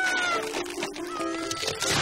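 Cartoon soundtrack: light music with a high, slightly falling squeal-like tone at the start, then a short noisy whoosh near the end.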